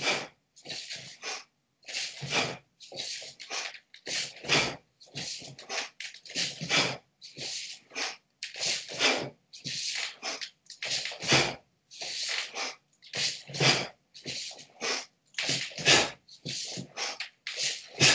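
A karate practitioner's sharp breaths and gi rustling as he works through movements: short noisy bursts, about one or two a second, with silence between.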